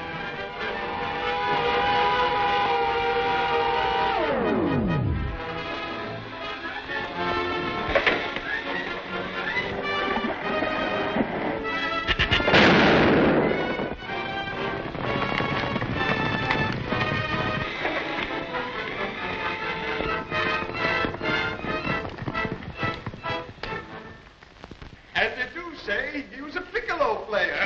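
Dramatic orchestral film score with an old optical-soundtrack quality. About four seconds in, a held tone slides steeply down in pitch. Midway through, a loud explosion effect lasts about a second over the music.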